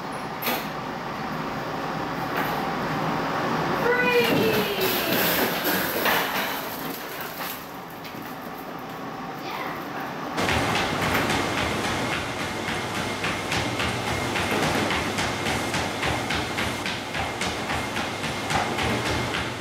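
Plastic-and-wire dog crate doors clattering, with a couple of brief high falling squeals. About ten seconds in, this gives way to a motorized treadmill running steadily, with a dog's paws striking the moving belt in a quick, even rhythm.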